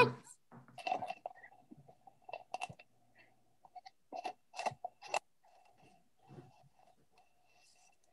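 Faint scattered clicks and short rustling noises picked up over a video call.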